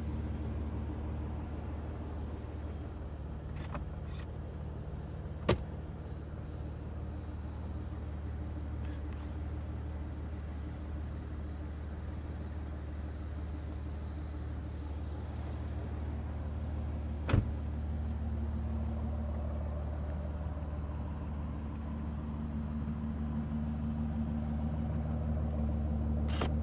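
Aston Martin V12 Vantage S's naturally aspirated V12 idling steadily. Two sharp clicks stand out, one about five seconds in and one about seventeen seconds in.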